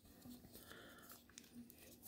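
Near silence, with faint crinkles and ticks from a small plastic packet being handled between the fingers.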